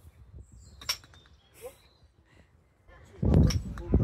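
A single sharp click about a second in, a putter striking a mini-golf ball. Near the end comes a loud, low rumble followed by another sharp click.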